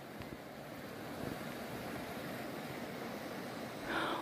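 Shallow mountain stream rushing over rocks: a steady rush of water.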